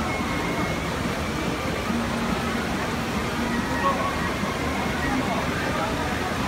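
Steady rush of shallow river water spilling over a low step in the channel, with the chatter of many people close by.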